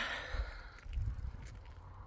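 A woman's breathy sigh, an audible exhale that fades out in the first second, with irregular low rumbling buffets on the phone's microphone.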